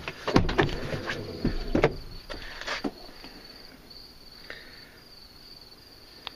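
Insects, crickets by their steady high chirring, sound on throughout. Several short knocks and rustles come in the first three seconds, then it settles to the insect sound alone.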